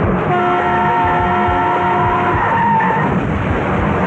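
Truck horn blaring in one long steady blast of about two seconds, with a second wavering tone running on a little longer, over a loud, dense action-film mix of vehicle noise.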